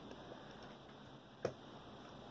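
Faint room noise with a single light click about one and a half seconds in, as the Rockit 99 delid tool is handled on the work mat.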